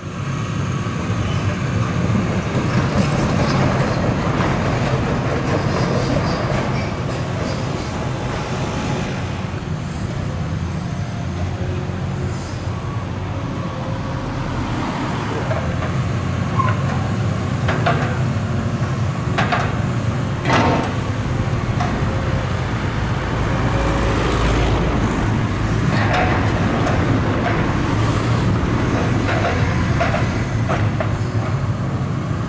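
Tracked demolition excavator at work, its diesel engine running with a steady low drone, with scattered clanks and crunches of steel as its demolition grab pulls at the building's steel framing. The loudest crash comes about twenty seconds in.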